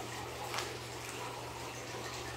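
Quiet room tone: a steady hiss with a low electrical hum, and a faint soft tap about half a second in as a card is laid down on a woven mat.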